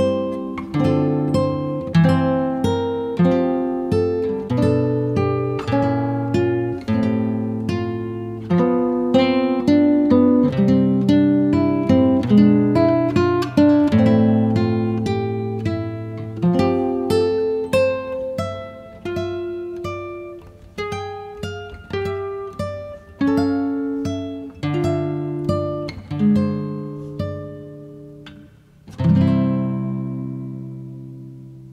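Background music on acoustic guitar: a continuous run of plucked notes and chords, each ringing out and fading. A fresh chord is struck near the end.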